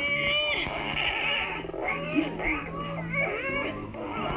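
A cartoon boy's voice whining a drawn-out, wavering 'do' through clenched teeth, over background music with held low notes.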